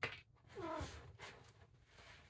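Cats playing around a fabric pop-up hamper: a sharp knock at the start, then one short cat call about half a second in, with light scuffling noise around it.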